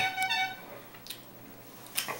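A man's short, high-pitched pained whimper lasting about half a second, from the burn of a Tabasco-covered playing card he is struggling to swallow. A faint click follows about a second in.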